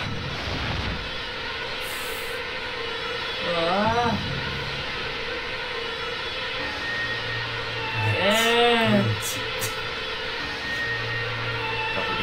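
Film soundtrack playing: a steady held drone of background score, with two swelling calls that rise and fall in pitch, about four seconds in and again near nine seconds.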